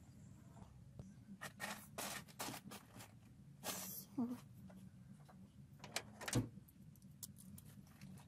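Sparse light clicks and knocks of hand work in a truck's engine bay, with a short rustle about four seconds in and a heavier thump about six and a half seconds in.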